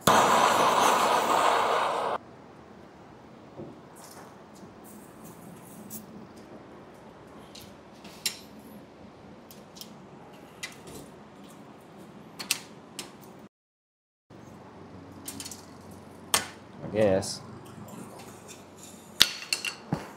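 A loud hiss for about two seconds, then scattered metal clicks, clinks and knocks as a Ford Bronco steering column is taken apart by hand and its shaft worked loose from the column tube.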